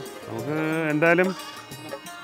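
A goat bleating: one drawn-out call of about a second with a slightly wavering pitch.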